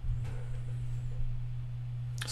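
A steady low hum, with a faint wavering high whistle in the first second.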